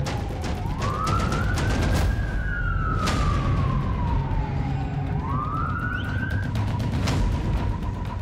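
Emergency vehicle siren wailing: it rises, falls slowly over about three seconds, then rises again, heard over a dramatic music bed.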